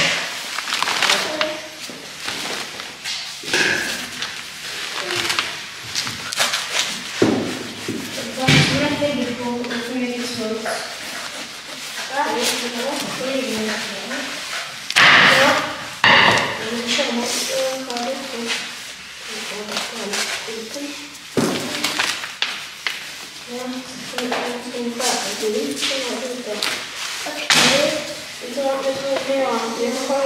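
Voices talking quietly, broken by scattered knocks and thumps from cutting up a carcass on a work surface.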